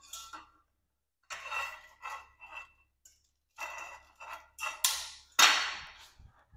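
Golf hitting net frame poles clinking and knocking as they are fitted together: two clusters of short, ringing clicks, then a louder, sharper knock near the end.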